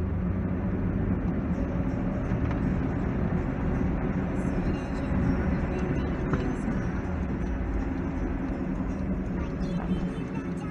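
Steady cabin noise of a Hyundai i20 driving on a wet road: engine and tyre rumble heard from inside the car.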